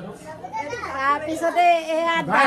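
Overlapping voices of people talking, including a child's high-pitched voice.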